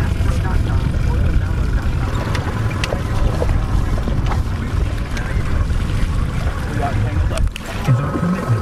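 Steady, uneven low rumble of wind buffeting the microphone on an open boat, with a few faint clicks over it.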